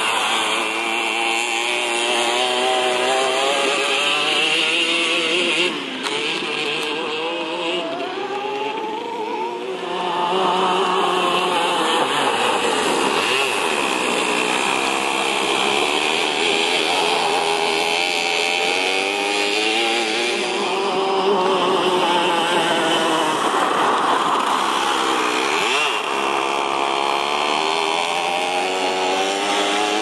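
Go-kart engine running hard and revving up and down, its pitch falling and rising several times.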